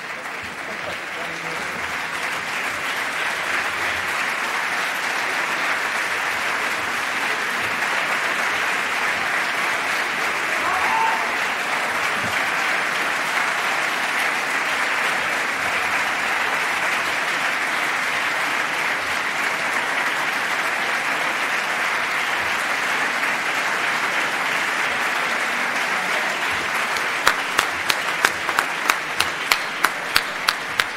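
A large audience applauding in an auditorium: sustained, even applause that builds over the first few seconds. Near the end it turns into rhythmic clapping in unison, about two claps a second.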